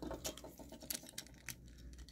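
Faint, scattered clicks and taps of small plastic toy-figure parts being handled and fitted together in the hands.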